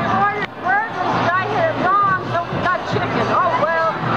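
A woman's voice talking close to the microphone, with crowd chatter behind.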